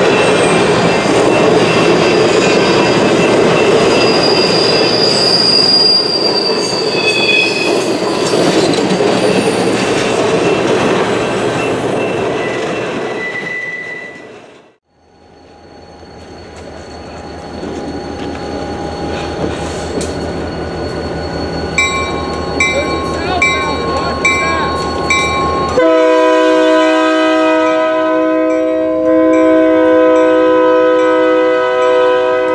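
Passenger cars rolling past on jointed track, with rumbling wheel noise and brief high wheel squeals; the sound fades out about halfway through. A diesel locomotive then rumbles up to a grade crossing while the crossing bell rings steadily. About 26 s in, the locomotive's multi-chime air horn sounds a long chord.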